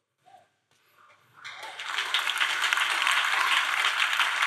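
Congregation applauding. The clapping starts about a second and a half in, swells quickly and then holds steady.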